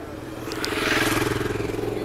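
A motor vehicle passing close by on the street. Its engine and tyre noise swell to a peak about a second in, then fade.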